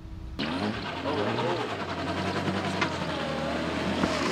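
A car engine running steadily under people talking and a laugh, with an engine note falling slowly near the end.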